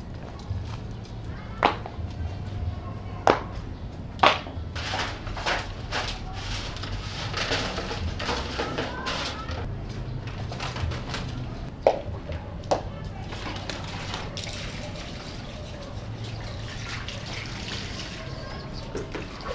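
Rain falling steadily, with scattered sharp knocks and splashes of water as a plastic basin and dipper are handled.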